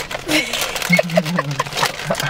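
A person's voice, unclear and wordless to the recogniser, over faint crinkling clicks of a chip bag.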